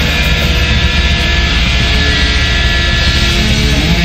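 Punk rock music: distorted electric guitar and bass holding long sustained chords, loud and steady.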